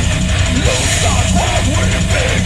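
Live thrash/death metal band playing at a steady loud level: distorted electric guitars, bass and fast drumming, recorded live in a club.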